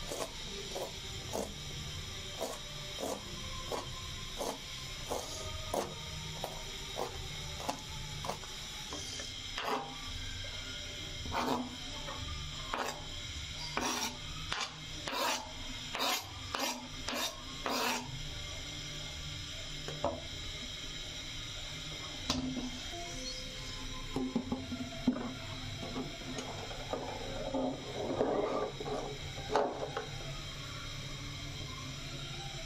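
Kitchen knife chopping fresh herbs on a plastic cutting board: short knocks of the blade on the board about once a second at first, then louder and quicker chops in the middle. Near the end comes a rougher scraping as the chopped food is pushed off the board.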